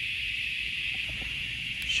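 Steady, unbroken high buzzing of an insect chorus, with a faint low rumble underneath and a small click near the end.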